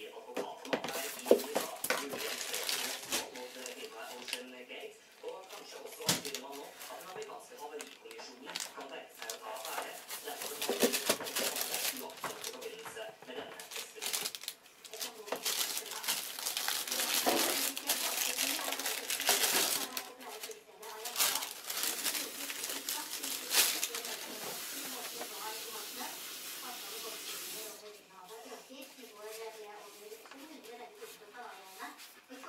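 Paper and plastic packaging rustling and crinkling as it is handled, in spells of a few seconds, with scattered knocks and taps. A low voice can be heard under it.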